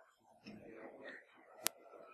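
Faint, quiet talk among people in the room, with one sharp click about one and a half seconds in.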